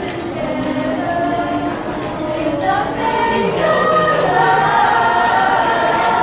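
An a cappella vocal group of women and men singing in harmony without instruments, several voices holding sustained chords together. The lowest voice steps down in pitch about halfway through.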